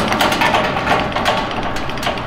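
A quick run of irregular metallic clicking and clatter as the back-gauge handwheel of a hydraulic plate shear is cranked to set the cutting size.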